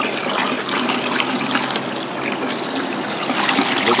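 Water from a garden hose running into a plastic bucket of liquid, a steady splashing gush as the bucket fills.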